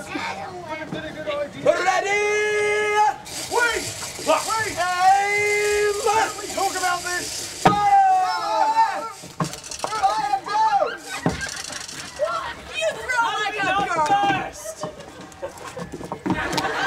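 Performers' voices without clear words: drawn-out cries and exclamations that rise and fall in pitch, one held for about a second near the start. A steady hiss sits under them from about three to seven seconds in.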